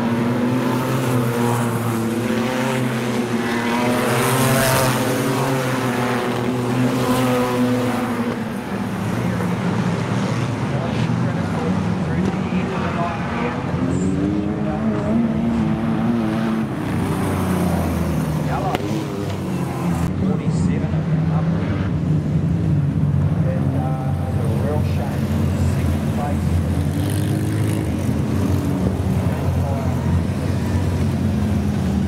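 A field of Six Shooter wingless sprint cars with six-cylinder engines racing on a dirt speedway oval. The engines run continuously, with the pitch rising and falling as cars come past close by and go on around the track.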